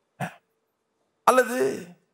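A man's voice clearing his throat: a very short catch about a quarter second in, then a longer voiced clearing in the second half.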